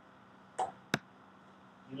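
Dry-erase marker on a whiteboard: a brief stroke about half a second in, then a sharp tap a moment later, over quiet room tone.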